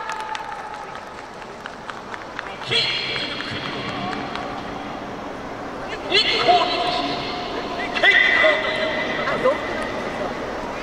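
A yosakoi dance team's voices shouting calls, three loud held shouts about three, six and eight seconds in, over the murmur of a stadium crowd.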